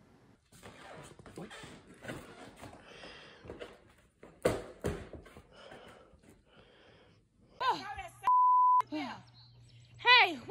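Small knocks and rustling, a sharp thump a little before halfway, then near the end a person's shout cut off by a half-second censor bleep, one steady tone.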